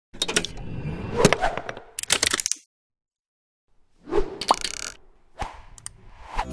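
Motion-graphics intro sound effects: a cluster of pops, clicks and crackles for about two and a half seconds, a second of silence, then a burst with a short rising tone and a few sharp clicks near the end.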